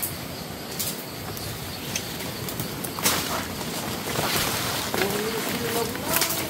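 Footsteps and the rustle of leaves and stems as people push through dense undergrowth, with a few sharp twig snaps. A short low call, rising slightly, near the end.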